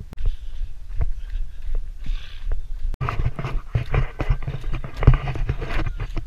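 Running footsteps on a wet, gritty trail path, a quick steady rhythm of footfalls. About halfway through they get louder and crunchier.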